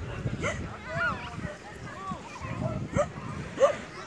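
Background voices of people on a beach mixed with dogs yipping and barking: short, high calls that rise and fall, coming about once a second.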